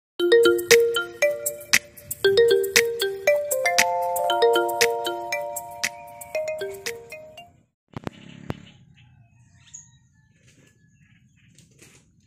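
Short intro jingle of bright, chime-like pitched notes playing a quick melody, lasting about seven seconds, then stopping. What follows is quiet, with a couple of faint clicks.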